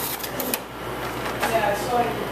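Several sharp clicks and knocks of sample boxes and plastic tubes being handled and shifted on freezer shelves, a cluster in the first half second and more about a second and a half in.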